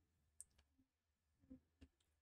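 Near silence broken by a few faint, short clicks, typical of a computer mouse being clicked, as a whiteboard tool is switched.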